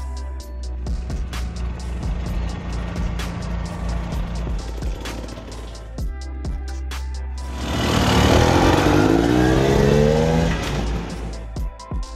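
Background music with a steady beat. About seven and a half seconds in, a KTM 300 two-stroke dirt bike engine comes up loud over the music, revving with rising pitch for about three seconds, then falls back.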